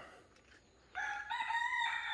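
A rooster crowing: one long crow starts about a second in, steps up in pitch and holds steady.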